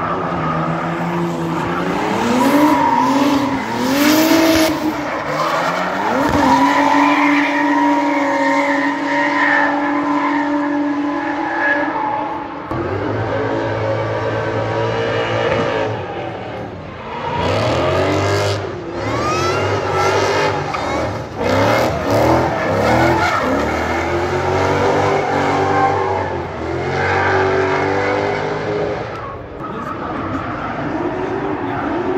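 Drift cars' engines at high revs: the pitch climbs in rising sweeps and holds high, then from about halfway bounces up and down in quick pulses as a car slides, with bursts of tyre screech.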